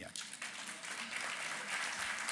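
Audience applause, starting as the talk ends and swelling over the first second or so into steady clapping.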